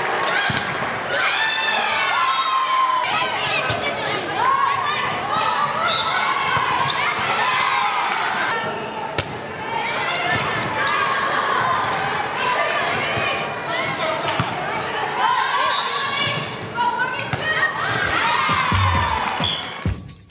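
Live sound of an indoor volleyball rally on a hardwood gym court: players' voices calling out, sneakers squeaking on the floor and the ball being struck, going on throughout.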